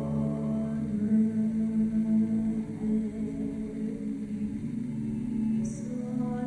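Slow choral music with long held chords, sung without words.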